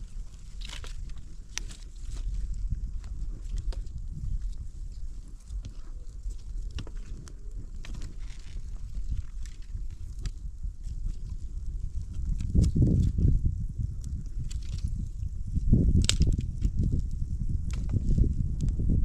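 Small wood fire in a cinder-block hearth, with scattered crackles and snaps as dry sticks are handled and fed in. Under it a steady low rumble swells louder twice in the second half.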